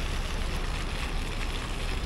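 Steady outdoor background noise with a low rumble of wind on the microphone.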